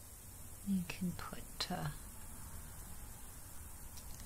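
A woman's quiet, muttered speech, a few soft syllables about a second in, with faint room hiss otherwise.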